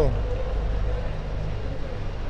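Steady low rumble of road traffic and idling vehicles. The tail of a man's word comes right at the start, followed by a faint held hum for about a second.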